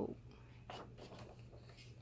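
Paper page of a picture book being turned: a faint rustle of paper, mostly just under a second in.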